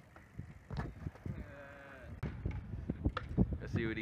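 Stunt scooter rolling on skatepark concrete, with scattered knocks and clacks from the wheels and deck. Voices call out in the background, most clearly near the end.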